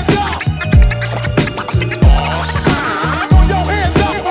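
Hip-hop beat with turntable scratching, quick back-and-forth record scratches over a deep kick drum and bass, in a DJ break between rap verses.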